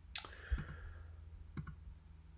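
A handful of faint, short clicks, about four of them spread across two seconds, over a low steady hum.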